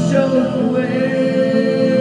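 A woman singing a worship song into a handheld microphone over a karaoke backing track, holding one long note.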